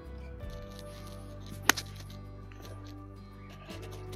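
Background music with a steady tune; a little under halfway through comes a single sharp crack, a golf club striking the ball out of a sand bunker.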